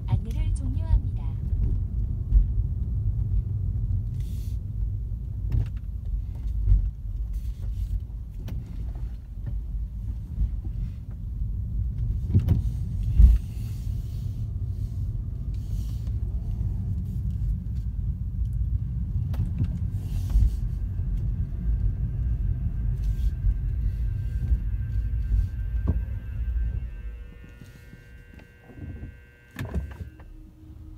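Low road and tyre rumble inside a Tesla's cabin as it drives slowly, with scattered knocks and thumps. The rumble falls away a few seconds before the end as the car slows to a stop, and faint steady high tones come in over the last several seconds.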